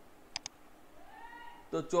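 Two quick clicks at a computer, close together, about half a second in, as a compiled C program is set running; a man's voice starts near the end.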